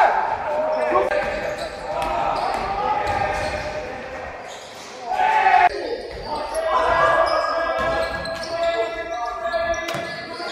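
Players' voices calling and shouting in an echoing sports hall, with a basketball bouncing on the hardwood floor. The sound eases off about four seconds in, then jumps back up just after five seconds.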